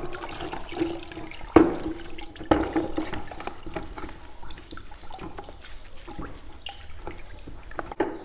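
Paint roller cover being squeezed and sloshed by hand in a bucket of water, rinsing out emulsion wall paint, with irregular splashing and squelching. Two sharp knocks stand out about one and a half and two and a half seconds in.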